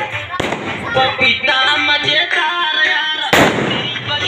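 Loud music playing while a firecracker goes off: one sharp bang a little over three seconds in, after a smaller crack near the start.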